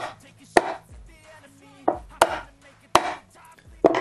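A soft-face mallet knocking on the edge of a white furniture panel: about six sharp, irregularly spaced knocks.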